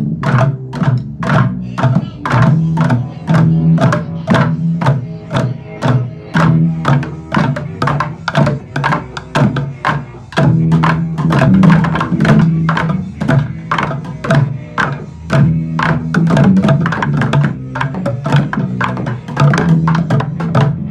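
An ensemble of plastic buckets played as drums with sticks, struck in a fast, steady rhythm of several hits a second, with a low, hollow pitched body under the strikes.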